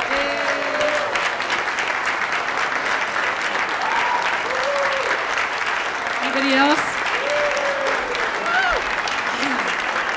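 Audience applauding steadily, with a few voices calling out over the clapping.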